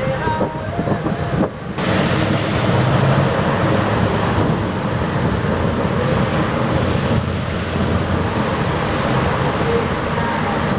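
Wind buffeting the microphone over choppy, churning water, with a harbour tug's diesel engine running underneath as it tows on a line. The sound drops briefly about a second and a half in, then carries on steadily.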